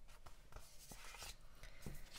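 Faint rustling of paper sticker sheets handled by hand, with a few light taps and clicks as a sheet is laid flat on a table.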